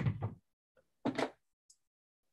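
Two short thumps about a second apart, with silence between.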